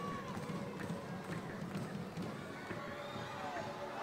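Football pitch ambience: distant shouts and calls from players over a low murmur, with a few faint knocks.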